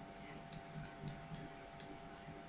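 Faint, irregular ticks of a stylus tapping on a pen tablet as numbers are handwritten, about five over two seconds, over a faint steady hum.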